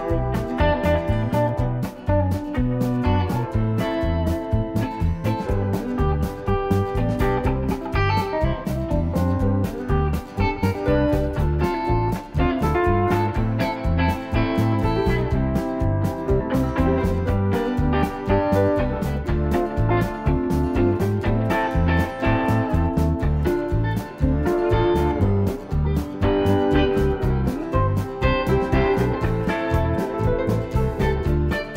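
Background music: a guitar-led instrumental with a steady beat.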